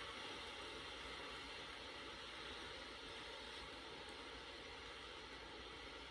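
Faint steady hiss of room tone, with a faint steady tone under it and a couple of faint ticks about midway.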